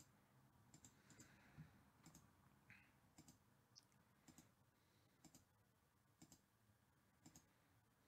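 Faint computer mouse clicks, single clicks about one a second.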